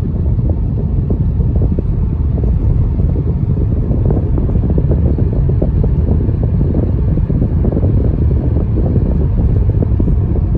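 Steady low rumble of a car driving along an asphalt road, heard from inside the cabin: tyre and engine noise at cruising speed.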